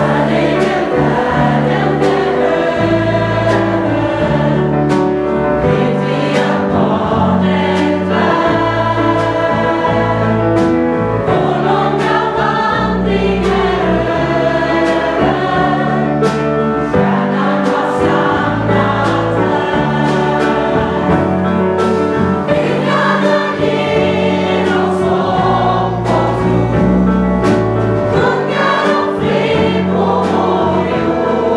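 Gospel choir singing in full voice, accompanied by piano, bass and drums, with regular drum and cymbal hits through the song.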